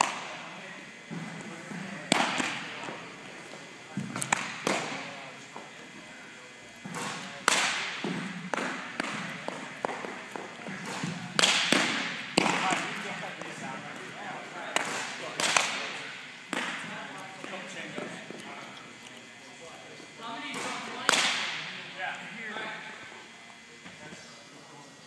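Baseballs being pitched and caught: repeated sharp pops of the ball hitting leather gloves, with smaller knocks and thuds between, each echoing off the walls of a gym.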